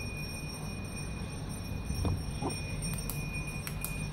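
Quiet steady hum with a few faint, sharp clicks of a hard plastic light-stick handle being handled and turned.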